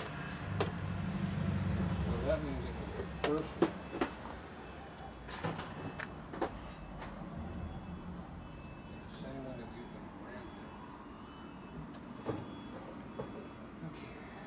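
Scattered metal clicks and knocks of hand tools and parts being handled during motorcycle assembly, most of them in the first seven seconds. Underneath is a low hum that swells in the first few seconds, and brief muffled voices come in twice.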